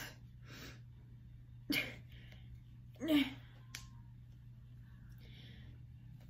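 Short breathy huffs and a brief effortful vocal sound from a girl straining to open a stuck setting spray bottle, with a single sharp click a little before the middle.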